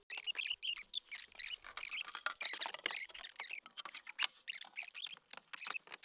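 A plywood bed panel being handled and slid across a metal bed-frame beam: a rapid, irregular run of short squeaks, scrapes and small knocks of wood on metal.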